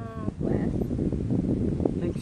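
A short bleat-like cry from a grey-headed flying-fox pup, ending just after the start, followed by low rustling and handling noise from the cloth she is wrapped in.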